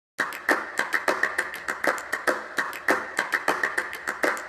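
A rapid, uneven series of sharp clicks, about five a second, starting just after the opening.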